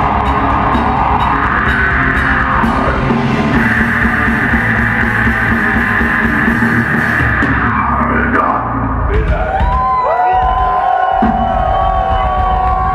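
Heavy metal band playing live at full volume: distorted electric guitars and a pounding drum kit through the PA. About eight or nine seconds in the full band stops, leaving held, ringing guitar tones with slight pitch bends, the sound of guitars left feeding back as the song ends.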